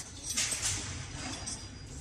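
Faint rustling and handling noise as an electrical cable and its plug are moved over the pump and fitted to a valve connector. It swells shortly after the start and fades away, over a low steady background hum.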